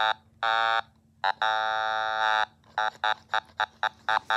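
An Otamatone, set on high, playing its buzzy electronic tone at one steady pitch in separate notes. There are a few held notes, the longest about a second, then a run of quick short notes about five a second near the end.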